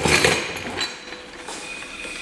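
Small metal tools and parts clinking and clattering as they are handled and rummaged through on a workbench, loudest in the first half-second, then lighter scattered clinks.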